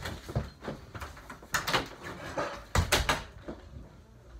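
A door being handled: a run of knocks and thumps, the loudest clusters about one and a half and three seconds in, dying away near the end.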